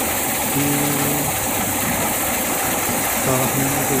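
Motorised rice thresher running steadily, its spinning drum stripping grain from bundles of rice stalks held against it, a continuous engine-and-machine noise with a steady hiss.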